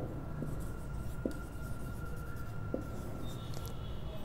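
Whiteboard marker writing on a whiteboard: faint strokes with a few short taps as letters are drawn.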